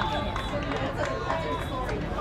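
Several voices calling out and chattering at once, overlapping, with occasional sharp clicks.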